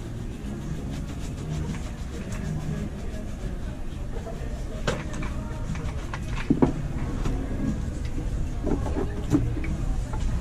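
Steady low background rumble, with a few sharp clicks and knocks from things being handled; the loudest is a quick pair of clicks about six and a half seconds in.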